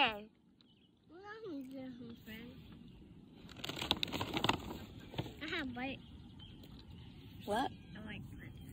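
Faint, high-pitched voices in short snatches of talk or calls, with a run of clicks and rustling about halfway through.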